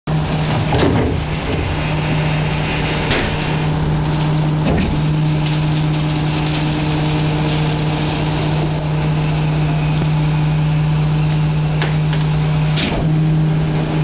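Isuzu rear-loader garbage truck with a Superior Pak Minipak body running its pack cycle: a steady engine and hydraulic hum with a few knocks and clunks, the hum breaking briefly about a second in, near five seconds and near the end.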